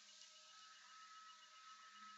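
Near silence: room tone with a faint steady high-pitched whine and a faint low hum.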